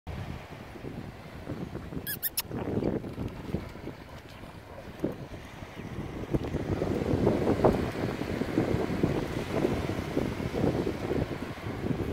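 Wind buffeting the microphone over small waves washing onto a sandy beach. The rumble grows louder about halfway through, and about two seconds in there are three short, high squeaks.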